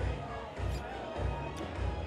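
Background music with a steady bass beat, about two beats a second.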